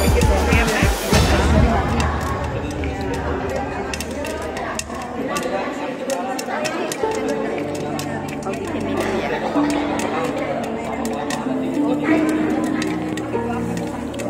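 Popcorn kernels popping in a lidded nonstick pan: many sharp, irregular pops throughout. Background music and voices play along with it.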